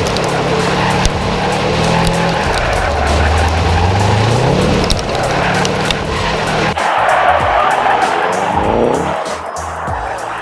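Subaru WRX STI's turbocharged flat-four engine revving hard as the all-wheel-drive car spins donuts, the revs climbing about three seconds in and again near the end, with tyres squealing and scrubbing on asphalt. Background music plays along.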